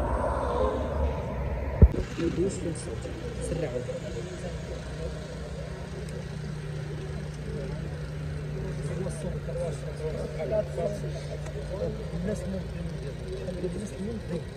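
Indistinct voices of several people talking in the background, with a steady low hum through the middle and a single sharp click about two seconds in.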